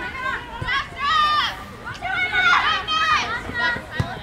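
Girls' high-pitched voices shouting and calling out in short, repeated yells, loudest about a second in and again midway through, during live soccer play.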